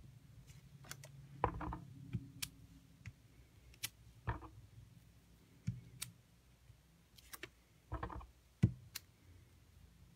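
Scattered light clicks and a few soft taps as a rubber stamp is inked on an ink pad and pressed onto paper, over a faint steady low hum.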